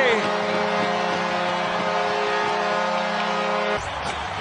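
Arena goal horn sounding a long, steady chord of several tones over a cheering crowd, signalling a home-team goal; it cuts off abruptly near the end.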